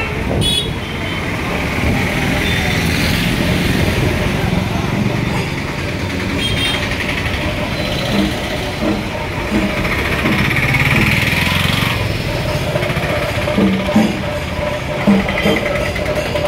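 Busy street noise: a crowd's overlapping chatter mixed with traffic and motorbike engines, with a few short louder knocks near the end.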